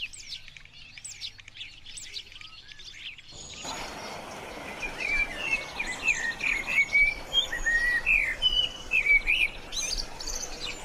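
Quick, thin, high bird chirps repeated about twice a second. A little over three seconds in, they cut to a different recording with a steady background hiss, in which a Eurasian blackbird sings varied warbling phrases that grow louder from about five seconds in.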